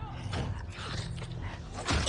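Creaking from the episode's soundtrack, over a steady low hum.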